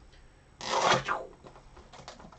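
Utility box cutter slicing the shrink-wrap and seal on a cardboard trading-card box: one short scrape lasting about half a second, just after the start.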